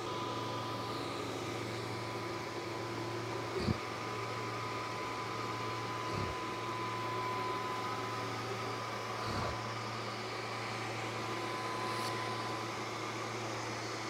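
Longer laser engraver with its Ruby 2 W pulsed infrared module engraving plastic: a steady fan hum with a thin, even high whine that stops about a second and a half before the end, as the engraving job finishes.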